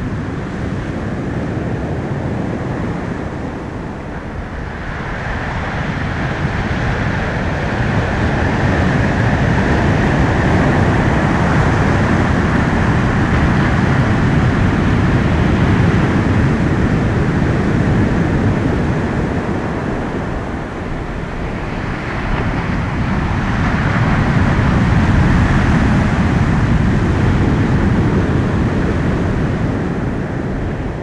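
A loud, steady rushing rumble with no clear pitch. It swells and eases twice, building about five seconds in and again about twenty-three seconds in.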